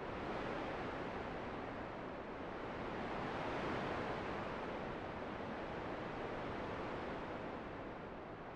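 Steady rushing noise of an ambient sound-effect bed opening a produced song, swelling a little around the middle and easing off again.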